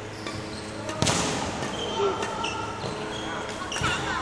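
Court shoes squeaking and footfalls thudding on a wooden sports-hall floor during badminton footwork, with one loud thump about a second in that rings on in the hall.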